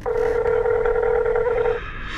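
Telephone ringback tone of an outgoing call: one steady ring lasting just under two seconds, then cutting off.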